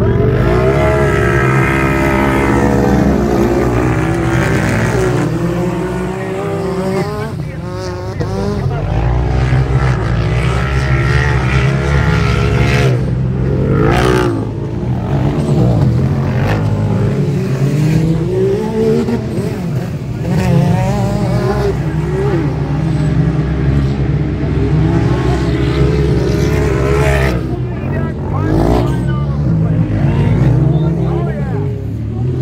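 A pack of 1000cc UTVs launching off the start line, their engines revving up together with a rising pitch. After that the engines run hard at high revs, their notes rising and falling as the machines race round the dirt track.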